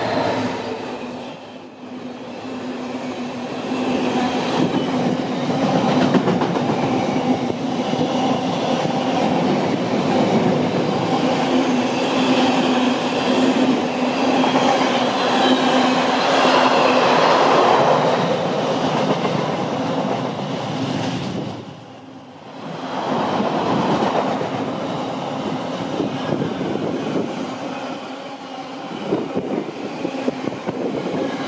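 A Freightliner Class 66 diesel freight locomotive passes at the start. A long train of container wagons follows, rolling by at speed with a dense clatter of wheels on rail and a steady hum. The sound dips briefly about two seconds in and again about twenty-two seconds in.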